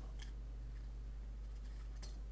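A few faint snips of paper card being cut, over a steady low hum.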